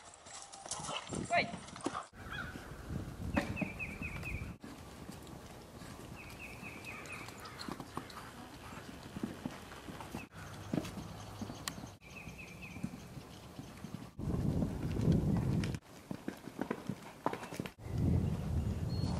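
Hooves of horses cantering and landing over jumps, on turf and in an arena's sand footing. The sound is spliced from several short clips, so it cuts off and changes suddenly every few seconds.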